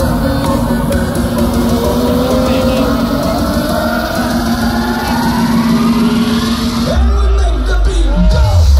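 Loud electronic dance music from a festival main-stage sound system, a build-up with held tones and rising sweeps, and a heavy bass line kicking in about seven seconds in.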